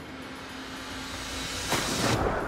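Steady rushing hiss that grows slowly louder, then a loud splash about three-quarters of the way through as a diver in a wetsuit drops off the side of a boat into the sea; right after it the sound turns low and muffled.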